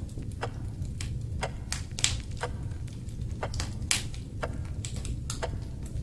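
Log fire crackling: sharp pops at irregular intervals over a low, steady rumble.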